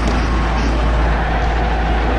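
Steady outdoor background noise with a deep, even low rumble underneath and no distinct events.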